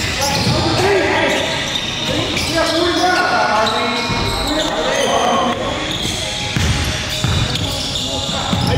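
Basketball game play in a gym: a ball bouncing and thudding on the hardwood floor, short sneaker squeaks, and players' voices calling out, all echoing in the large hall.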